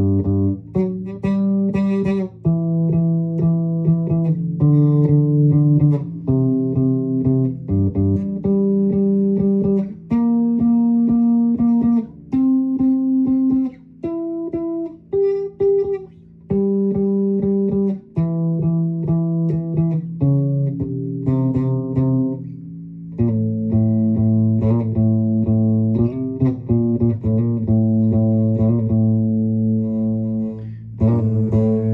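Electric bass guitar playing a slow melodic line of held notes, each ringing about a second, with short breaks between phrases.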